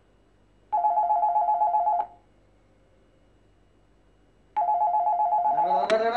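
Corded desk telephone ringing twice with an electronic trilling ring. Each ring lasts about a second and a half, with a gap of about two and a half seconds between them. A man's voice cries out over the end of the second ring.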